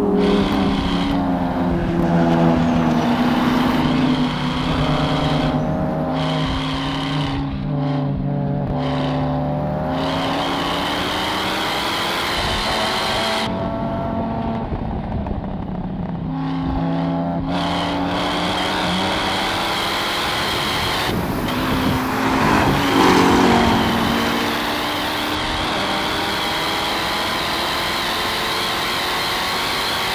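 Sports-car engines at full throttle on a racetrack. Their pitch climbs through each gear and drops at each shift or lift. At times two engine notes sound together, one rising as the other falls, and this is loudest a little past twenty seconds in.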